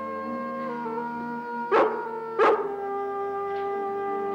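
A rough collie barks twice, about two-thirds of a second apart, over orchestral background music with long held notes.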